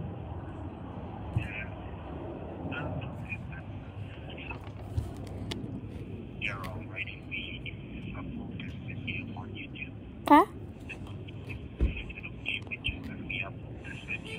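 Indistinct voices over a phone call, too unclear for words to be made out, with one short rising vocal sound about ten seconds in.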